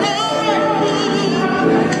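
A woman singing a pop ballad live into a microphone over backing music, drawing out one sung syllable with vibrato before the line goes on.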